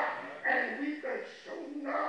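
A man preaching through a handheld microphone in short, strained phrases with brief pauses between them.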